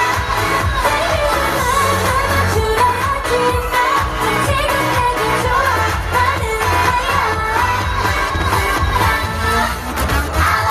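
Recorded K-pop dance song with sung vocals over a steady bass beat, played loudly through outdoor stage speakers.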